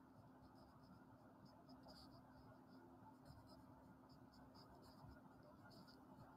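Faint strokes of a Sharpie felt-tip marker writing on paper, a scatter of short, light squeaks and scratches.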